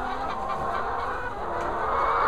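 A flock of laying hens clucking, many overlapping calls at once.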